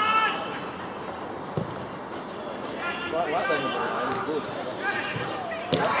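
Outdoor football match: players and spectators shout across the pitch, with a sharp thud of a ball being kicked about one and a half seconds in and another just before the end.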